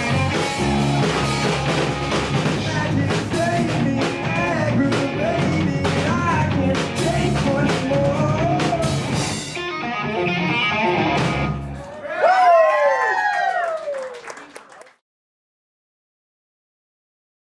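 Rock band playing live: electric guitar over bass and drums. About twelve seconds in the band drops out, leaving a few gliding notes that fade to silence about three seconds later.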